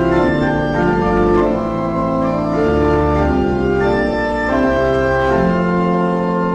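Organ playing the hymn's introduction in slow, sustained chords that change about once a second, before the congregation begins to sing.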